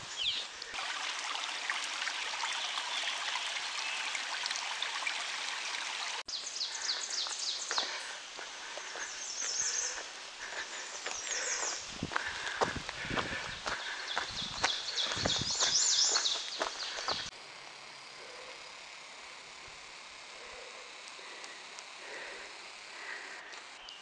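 Forest ambience on a wet trail: a steady background hiss, with birds singing in short repeated high phrases through the middle and footsteps on the dirt path. The background changes abruptly twice where the recording is cut.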